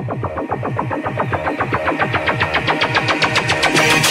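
Electronic music: a fast, even pulse of about eight beats a second over a repeating bass line, building steadily in loudness and brightness.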